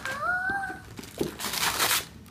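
A child's short rising 'ooh', then wrapping paper tearing and rustling loudly during the second half.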